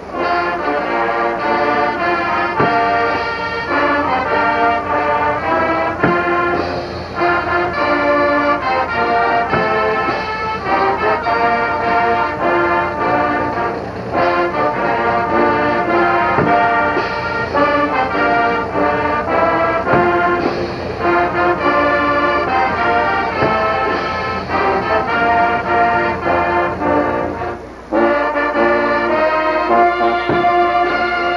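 A band with brass playing, announced as the national anthem and the school alma mater. The music breaks off briefly near the end and then starts again.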